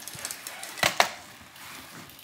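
Road bike's rear wheel freewheeling in a workstand, its freehub ticking fast and steadily, with two sharp clicks close together about a second in from the bike being handled.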